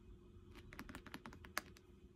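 Fingernails tapping on a book's cover: a quick, faint run of about ten light clicks starting about half a second in, the loudest near the end.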